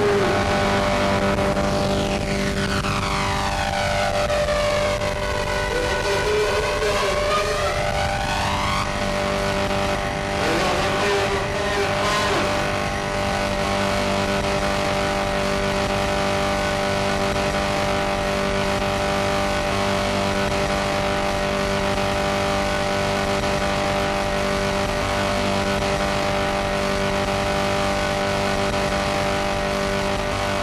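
Noise music: a loud, dense wall of harsh noise over steady droning tones. Through the first nine seconds arcing sweeps rise and fall in pitch, with a brief warbling glide a little after that, and then the drone goes on unchanged.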